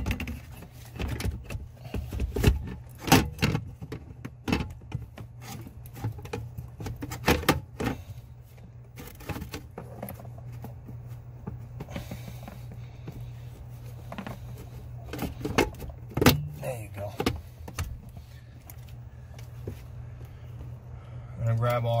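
Irregular clicks and knocks of the truck's PCM (engine computer) being handled and pushed into its mounting bracket under the dash, over a steady low hum.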